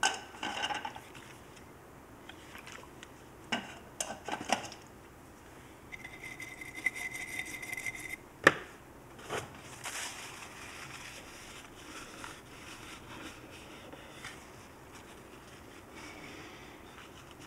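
Hand cleaning of a small circuit board at a workbench: scattered small clicks and rubbing, a whistling hiss lasting about two seconds from about six seconds in, and a single sharp knock a little later, the loudest sound here.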